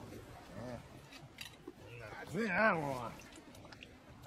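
A man's voice making short sounds with a wavering pitch but no clear words. The longest and loudest comes a little past the middle. There are a few faint clicks around them.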